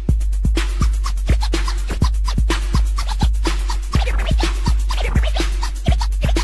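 Electro hip-hop dance track with a steady kick-drum beat of about two hits a second, heavy bass and fast hi-hats, with DJ turntable scratching over it.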